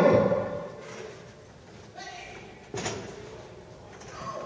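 An amplified word fades out in a large hall's echo, then faint voices and a single sharp thump just under three seconds in.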